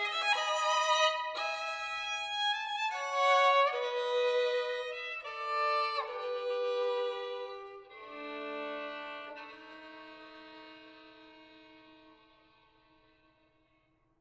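Solo violin, bowed, playing a slow line of separate notes that steps downward, then settling on low sustained notes about eight seconds in that fade away over the last few seconds.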